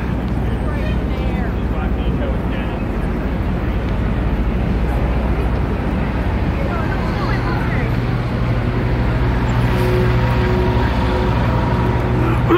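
Busy city street ambience: a steady rumble of traffic under the chatter of a crowd of pedestrians. From about halfway through, a steady hum with a few held tones joins in.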